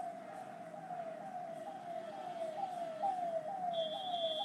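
A faint siren: a short falling tone repeating a little over twice a second, steady throughout, with a thin high steady tone joining near the end.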